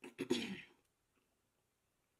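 A woman clearing her throat once, a short burst lasting under a second.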